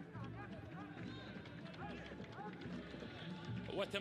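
Football stadium ambience: scattered voices of supporters shouting and chanting over a low steady rumble, with a louder shout near the end.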